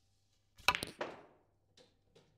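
Snooker cue tip striking the cue ball hard and the cue ball cracking into the black: a quick cluster of sharp clicks about two-thirds of a second in, dying away over half a second, with a faint click near the end. It is a powerful screw back shot played with a touch of side.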